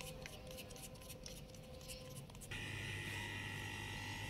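Faint soft ticks of hands working a ball of dough. About two and a half seconds in, a steady low hum with a thin held whine takes over.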